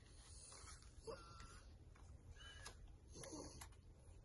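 Near silence, with a few faint, short vocal sounds.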